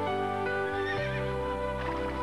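Background music of sustained notes, with a horse whinnying over it about half a second in, the call wavering up and down in pitch for under a second.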